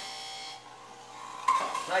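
Electric juicer motor running with a steady whine while a beet is pushed down its feed chute and ground.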